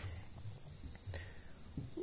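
A steady, high-pitched insect call held on a single tone, over faint low rumble.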